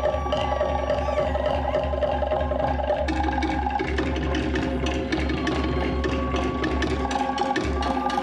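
Live Polynesian percussion music: fast, steady beating on wooden log drums and drums, with a few long held notes above the rhythm.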